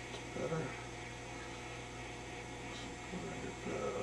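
Steady mains hum from a vintage Admiral 24C16 tube television switched on and warming up.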